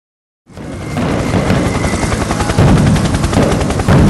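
Fireworks going off: a dense run of rapid crackling bangs over a low rumble, starting suddenly about half a second in.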